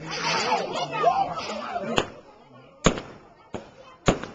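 Aerial fireworks bursting: three sharp bangs in the second half, the middle one loudest, with people's voices before them.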